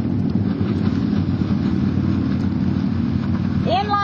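Engine running steadily with an even, low drone.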